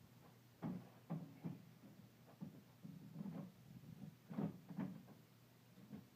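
Aluminium telescoping ladder (Xtend and Climb 780P) being extended upright: a string of light knocks and clicks of metal sections and rungs, the two sharpest coming about four seconds in.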